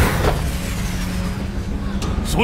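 Soundtrack rumble effect: a sudden deep boom at the start gives way to a steady low rumble, with a low drone held underneath.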